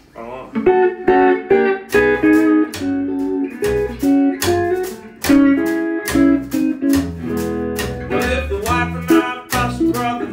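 A hollow-body electric guitar plays a bluesy line. A wire brush strikes a sandblasted-skin brush pad mounted on a double bass, keeping a steady snare-like beat of about two strokes a second.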